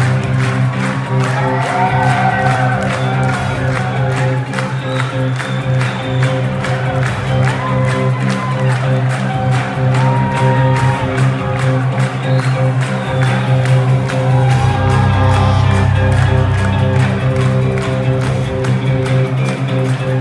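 Rock band playing live in a large hall, heard as a stretch without vocals: sustained, held chords over a steady low note, with the bass dropping lower for a couple of seconds about three quarters of the way through.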